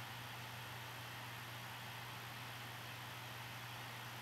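Faint steady hiss with a low, even hum underneath: the recording's background noise, with no clicks or other events.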